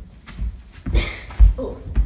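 Several dull thuds and shuffles of a child's hands, feet and body on a hardwood floor as he moves bent over on all fours and drops to sit on a rug, the loudest thud about one and a half seconds in. A short 'oh' near the end.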